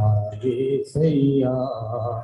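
A man's voice chanting in long, drawn-out tones, with a short break about a second in.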